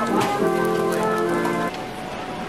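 Music with several held notes sounding together over a steady noisy hiss, breaking off suddenly near the end.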